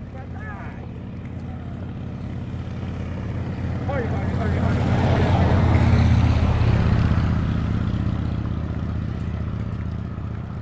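A pickup truck driving past on the road, its engine and tyre noise growing louder to a peak about six seconds in and then fading as it moves away.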